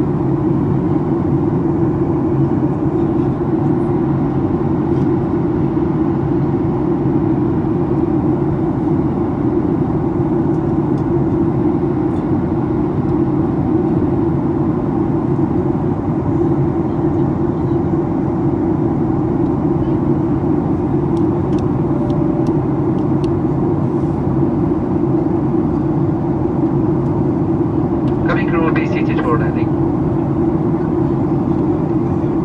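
Steady low rush of a jet airliner's cabin in cruise, heard from a window seat beside the engine, constant in level throughout. A brief voice-like sound is heard near the end.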